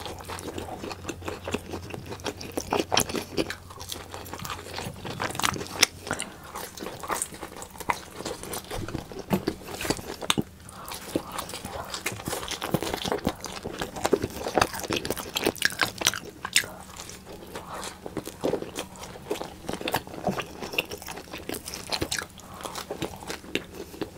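Close-miked biting and chewing of pizza: crisp crunches and wet mouth clicks in an uneven, dense run.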